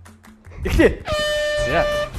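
Game-show horn sounding one steady, unwavering tone from about a second in, under a shouting voice: the signal that starts the timed round.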